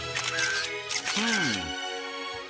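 Camera shutter sound effects clicking in two quick bursts, like a rush of paparazzi photos. A short gliding cartoon vocal sound follows over background music.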